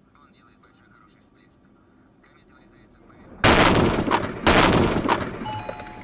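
A truck crashing into the dashcam car: a sudden, very loud collision about three and a half seconds in, two heavy impacts close together with crunching noise, fading away over the next second or two.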